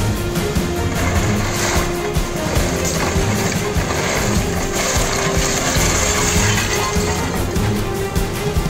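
Background music with held notes, steady in level.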